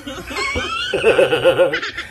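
A man laughing, breaking into a quick run of about five short laugh pulses about a second in.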